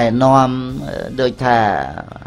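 A man's voice chanting into a microphone in a melodic, sung intonation. He holds long, steady notes, with a short break about a second in.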